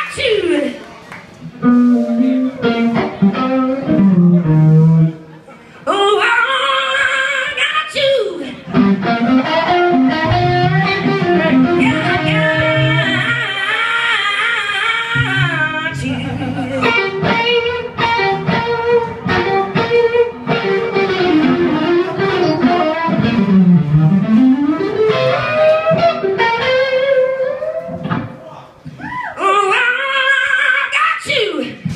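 A live band playing loud amplified music. An electric guitar leads with bending, wavering notes over bass and drums.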